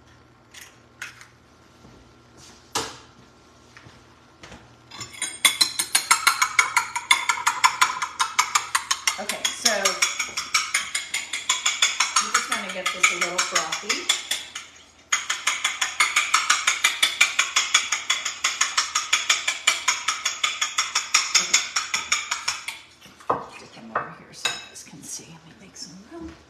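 A metal fork beating eggs in a glass bowl: fast, even clinking strokes against the glass, about four a second, with a short pause about two-thirds of the way through. It is preceded by a few separate taps as the eggs are cracked.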